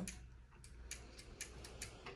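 A quiet pause with a run of faint, quick clicks, about five a second, in the second half.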